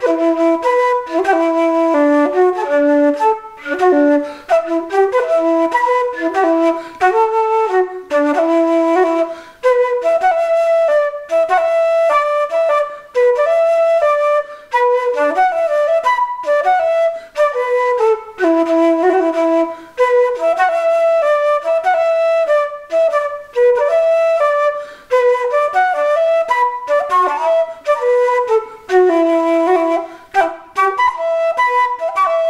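Solo wooden keyed flute playing a traditional Scottish tune: a quick melody of short notes, with brief gaps for breath between phrases.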